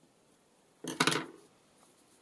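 A brief clatter about a second in, as a small hand tool is set down on the work table.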